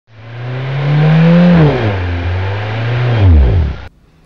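Car engine revving as an intro sound effect. Its pitch climbs over the first second and a half and dips, then falls away steeply near the end and cuts off suddenly.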